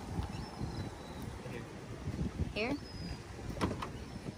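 Wind buffeting the microphone in a gusty low rumble, with a couple of sharp clicks near the end.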